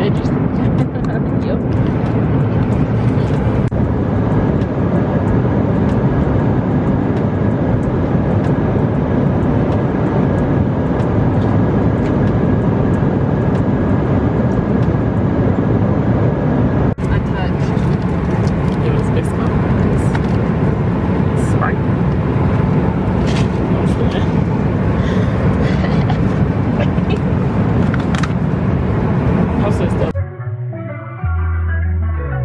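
Steady airliner cabin noise in flight: the low rush of the engines and airflow, with a brief dip about seventeen seconds in and scattered light clicks and knocks after it.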